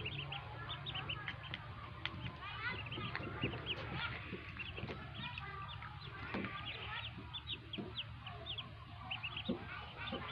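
A brood of newly hatched ducklings peeping constantly, many short, high calls overlapping. A low steady hum runs underneath.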